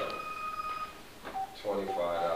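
A steady high-pitched electronic tone that cuts off about a second in, followed by speech near the end.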